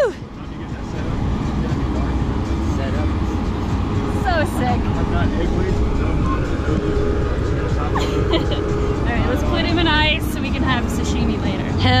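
A steady low rumble with faint voices talking now and then in the background.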